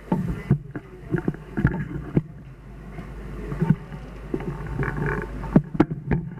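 Handling noise from a table microphone being taken out of its stand: a series of irregular knocks and bumps over a steady low hum. It comes while the lecturer repositions the mic because the room could not hear him.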